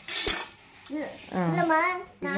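A metal spoon clinks and knocks against a stainless-steel pot of green pani puri water, a short clatter in the first half second. A voice talks after it.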